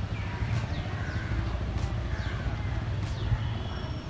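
A Hero Honda Karizma ZMR motorcycle's single-cylinder engine running as a low steady rumble while the bike rides along at a distance. Birds call over it in short, falling chirps.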